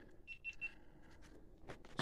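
Three quick, faint, high-pitched electronic beeps in a row, followed by a couple of soft clicks near the end.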